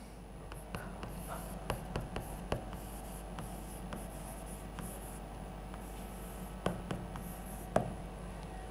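Chalk writing on a blackboard: soft scratching strokes broken by sharp taps of the chalk against the board, with two louder taps near the end.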